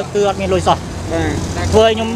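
Speech over a low rumble of road traffic, which swells for a second or so in the middle as a vehicle passes.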